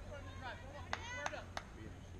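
People talking in the background, with three sharp knocks about a third of a second apart near the middle.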